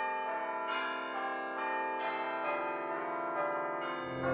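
Bells ringing a slow tune: each new note starts cleanly and rings on under the next.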